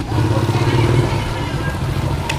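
An engine running steadily with a low hum.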